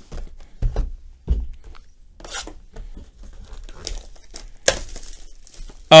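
A 2020-21 Panini Certified basketball hobby box being handled by hand: a few dull knocks of the cardboard box on the table in the first second and a half, then a few seconds of plastic wrapping crinkling and tearing, ending in a sharp click.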